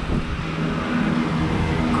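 A steady low mechanical hum, like running machinery or an engine, with a faint steady tone held throughout.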